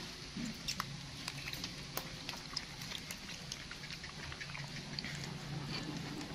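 Baby macaque eating a longan: many small wet chewing and lip-smacking clicks, scattered and irregular, over a faint steady low hum.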